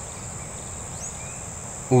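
Steady high-pitched insect chorus in rural vegetation, with a faint short rising chirp about a second in.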